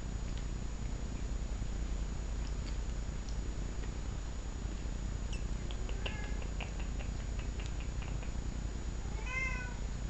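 A Manx cat gives one short meow that rises and falls, near the end, over a steady low background hum. A few faint, light clicks come a couple of seconds before it.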